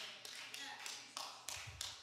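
About four faint, sharp taps spread out over two seconds, with a faint low murmur of a voice near the end.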